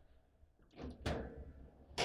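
Table football play: the ball struck by the rod figures and the rods knocking against the table, with a couple of sharp knocks about a second in over a low steady hum.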